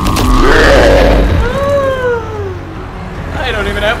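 Film sound effect of a giant monster: a loud, deep boom and roar, followed by one long falling groan-like cry. A man starts shouting near the end.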